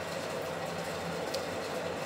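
Steady background noise with a faint low hum and no speech.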